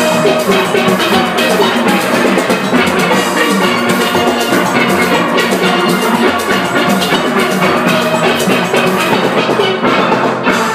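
A steel band playing a fast Panorama arrangement: many steel pans sounding in several voices over a steady percussion beat.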